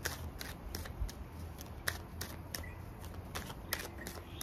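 Tarot cards being shuffled and handled: an irregular run of crisp card snaps and flicks.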